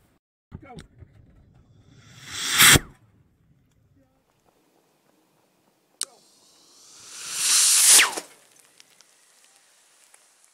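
PVC-cased sugar-fuel rocket motor on a ground test: a sharp crack about six seconds in, then a rising rush for about two seconds that cuts off suddenly as the motor explodes. The number 20 nozzle is too small for the pressure this motor builds, so the casing bursts. An earlier swelling rush cuts off sharply about three seconds in.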